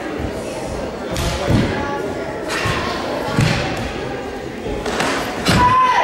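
Karate kata in a reverberant hall: bare feet stamping on a wooden floor and gi sleeves snapping, with heavy thuds about a second and a half, three and a half and five and a half seconds in. A short shout, a kiai, comes just before the end.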